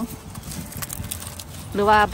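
A young Japanese knotweed shoot being snapped off by hand: a sharp, crisp snap a little under a second in, among a few fainter clicks from the handled stems.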